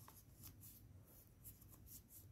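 Near silence, with faint, brief rustles of thin paper being handled and creased by hand as an origami unit is folded.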